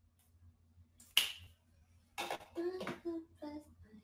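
A single sharp click about a second in, followed by a woman's voice making a few short held notes.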